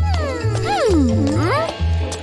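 Cartoon background music with a steady bass beat. Over it, a pitched, meow-like cartoon vocal sound effect slides down, then swoops back up near the end.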